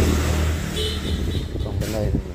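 A motor vehicle's engine running close by on the road, loudest around the start and easing off a little, with a short high tone about a second in.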